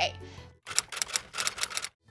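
Typewriter key-clicking sound effect: a quick run of sharp clicks starting just over half a second in and cutting off suddenly near the end, laid under the appearance of a title card.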